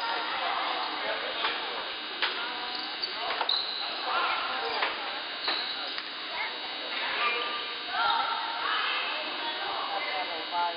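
A basketball bouncing on a hardwood gym floor during play, with voices of players and spectators calling out.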